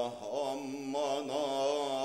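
Male voice singing a slow, melismatic line with a wide wavering vibrato, in a soleá that joins flamenco cante with Ottoman Sufi vocal music. The phrase breaks briefly just after the start and then carries on.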